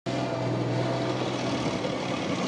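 Tank engine running with a steady low drone as the tank drives by.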